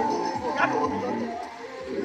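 People's voices mixed with music.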